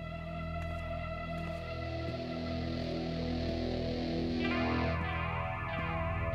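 Slow, sombre background score: low sustained tones under a swell that builds until about four and a half seconds in, where a shimmering, wavering layer of sound enters.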